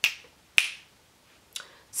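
Three short, sharp clicks, spaced a little over half a second to a second apart.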